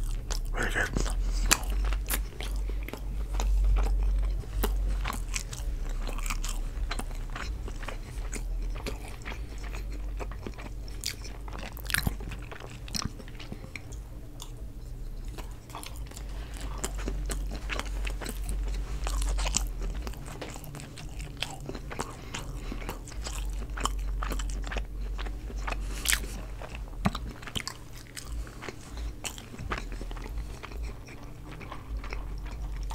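Close-miked chewing of chicken fajitas and cilantro rice: a continual run of wet mouth clicks and smacks, with a steady low hum underneath.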